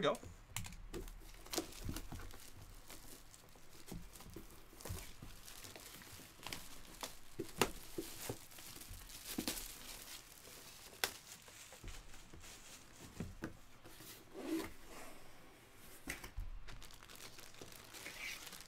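Clear plastic wrapping around a jersey crinkling and tearing as it is handled and opened, in irregular rustles with scattered sharper crackles.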